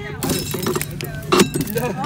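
Hand-cranked corn sheller stripping dried corn kernels off the cob, with a run of crunching and rattling as the kernels fall into the tray. The loudest crack comes about one and a half seconds in. Voices talk over it.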